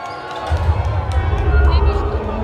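Concert crowd shouting and singing out; about half a second in, a deep bass rumble comes in over the crowd and the sound grows louder.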